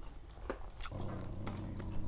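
A man chewing fish and rice, with sharp wet mouth clicks and smacks. A low, steady closed-mouth hum runs for under a second about halfway through.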